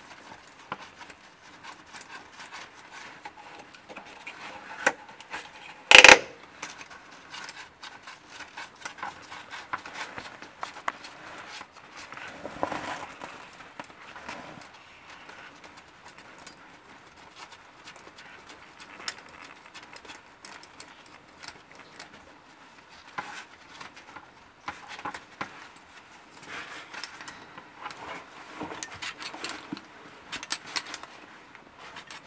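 Metal carabiners clinking and clicking as gloved hands handle them and clip them to a rock anchor, with rustling of clothing and gear. One loud sharp knock comes about six seconds in.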